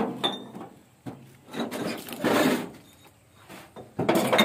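Small glass liquor bottles clinking and knocking as they are handled and lifted out of a hidden compartment in an autorickshaw's body, with a sharp knock at the start and a few short bursts of rattling and scraping.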